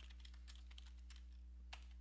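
Faint typing on a computer keyboard: a scatter of soft key clicks over a steady low hum.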